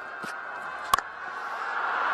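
Stadium crowd noise, with one sharp crack of a cricket bat striking the ball about a second in; the crowd grows louder as the mistimed shot goes high in the air.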